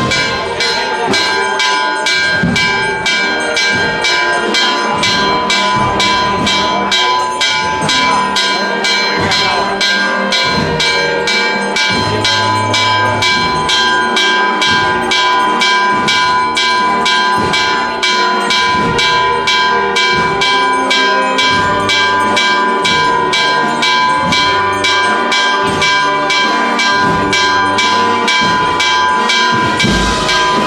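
Church bells pealing in a fast, even run of strokes, about three a second, with the bells' ringing tones holding steady throughout. This is the festive peal that marks the end of the Corpus Christi procession.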